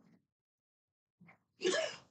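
A short, loud burst from a person's voice about one and a half seconds in, after a faint blip at the start.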